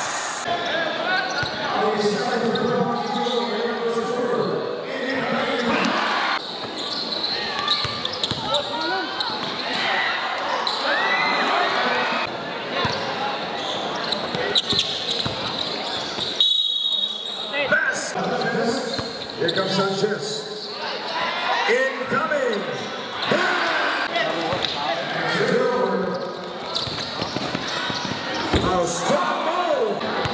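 Basketball game in a crowded gym: many voices shouting and talking, echoing in the hall, with the ball bouncing on the court. A short high whistle sounds about halfway through.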